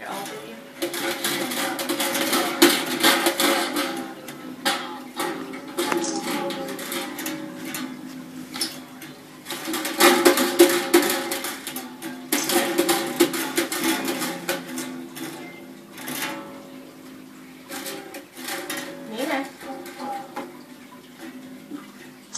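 Acoustic guitar strummed over and over on open, unfretted strings by a beginner, in uneven bursts of scratchy strokes with the strings ringing between them; it gets quieter for the last few seconds.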